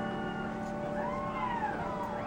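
A high, wavering wail in the music track, gliding up and then down in pitch, strongest in the second half, over held notes lingering from a piano passage.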